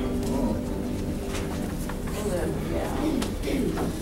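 The last held chord of the prelude fades out in the first half-second. Then come low, indistinct voices with scattered rustles and small knocks.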